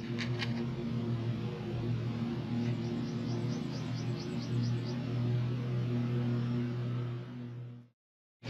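Background music with sustained low notes, fading out near the end.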